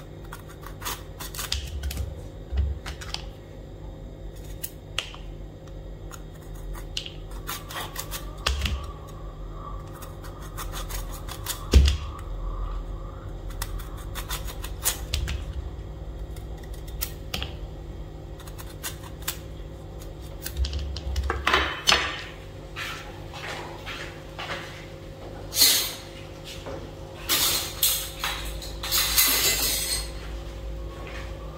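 Kitchen knife cutting whole bitter melons into chunks held in the hand, with irregular sharp clicks and knocks as the blade goes through and the pieces drop into a plastic colander. The clicks come thicker near the end.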